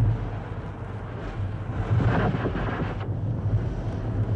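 Flamethrower sound effect on an archival film soundtrack: a rushing roar that swells about a second in and eases off near three seconds, over a steady low hum.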